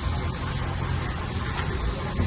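An engine running steadily at idle, a low rumble under an even hiss.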